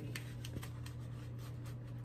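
Faint rustling and light ticks of paper banknotes and cards being handled and slipped into a leather pocket agenda, over a steady low hum.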